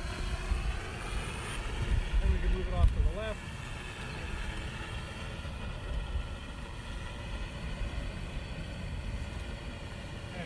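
Multirotor drone flying overhead, its propellers giving a steady buzz of several stacked tones that drift slightly in pitch. Wind rumbles on the microphone for the first three seconds.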